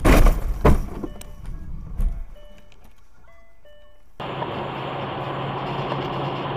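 Vehicle collision: a very loud crash at the start, a second bang under a second later and a weaker one about two seconds in. About four seconds in, the sound switches abruptly to a steady vehicle engine and road noise with a low hum.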